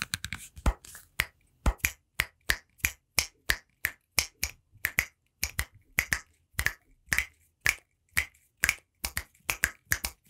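Finger snaps close to a microphone, a steady run of sharp separate snaps at about three a second.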